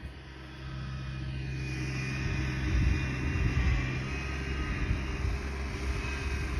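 Pickup truck engine running steadily, a low even rumble.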